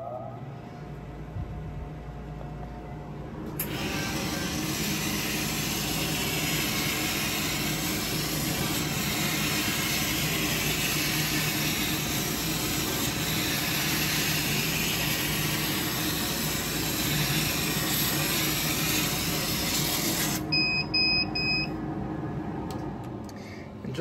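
A laser cutter starting a cutting job: a low hum comes on first, then a steady hiss from its fans and air assist joins about three seconds in and runs through the cut. Near the end the hiss stops and the machine gives three short beeps, the signal that the job is finished.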